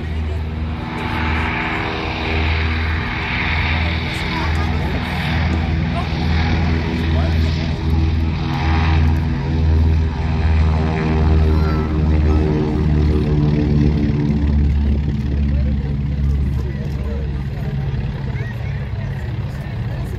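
Beechcraft E.18S's twin Pratt & Whitney R-985 nine-cylinder radial engines at takeoff power as the aircraft rolls down the runway and lifts off. The engine drone grows loudest and drops in pitch as it passes about halfway through, then recedes.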